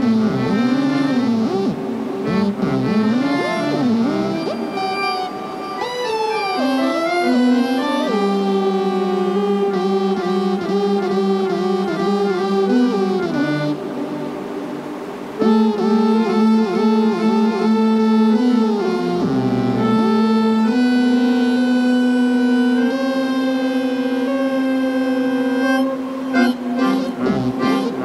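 Hammond 44 Pro keyboard harmonica (melodica) playing a free improvisation, its sound run through effects. It starts with wavering, gliding pitches, then moves to held notes and chords. A sudden loud re-entry comes about halfway through, and near the end a slowly climbing line sounds over a steady low note.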